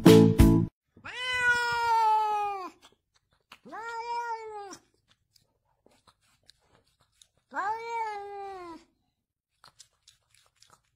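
A domestic cat meowing three times: a long meow about a second in, a shorter one a little later, and a third near the end, each sagging slightly in pitch at its close. Music cuts off just before the first meow.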